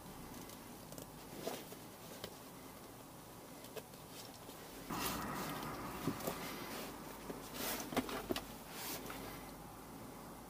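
Faint handling noise from crimping electrical connectors: small sharp clicks of a hand crimping tool and plastic crimp connectors, with rustling of wire and fabric. The clicks and rustle get busier in the second half.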